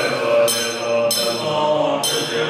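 Group of voices chanting a Buddhist prayer in unison at a steady drone. A bright metallic ringing cuts in sharply several times at roughly even intervals over the chant.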